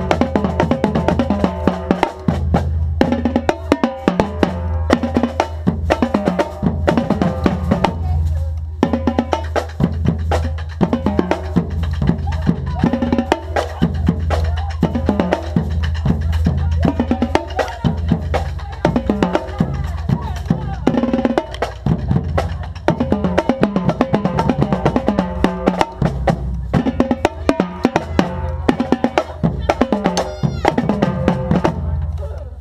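Marching drumline playing a continuous fast rhythm, with tenor drums (quads) struck right at the microphone and snare drums alongside.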